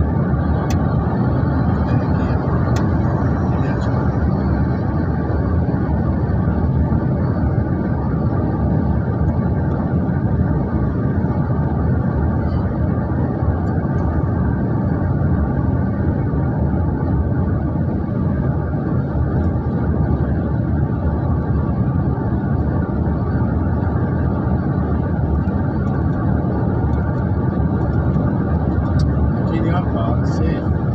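Steady road and engine noise from inside a moving car, an even, unbroken sound that holds the same level throughout.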